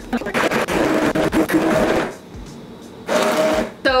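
Handheld immersion blender running in a pot of thick cooked corn chowder: a steady motor whine over the churning of the soup. It runs in two bursts, one of about two seconds just after the start, then a shorter one about three seconds in.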